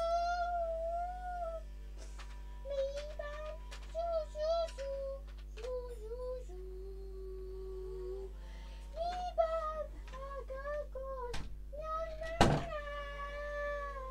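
A girl singing a tune to herself, in phrases of held notes with wavering pitch. A loud knock cuts in about twelve seconds in.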